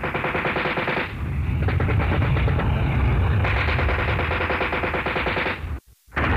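Radio-drama battle sound effects: bursts of rapid machine-gun fire over a continuous low rumble. One burst rattles for about the first second and another from past the middle until a sudden, brief cut-out just before the end.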